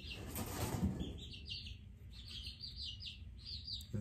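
Baby chicks peeping over and over, a run of short, falling high peeps several times a second, with a brief rustling noise in the first second.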